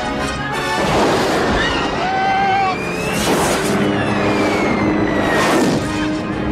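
Film battle soundtrack: orchestral score mixed with action sound effects. Loud noisy bursts come about a second in, near the middle and near the end, with falling whistle-like tones in between.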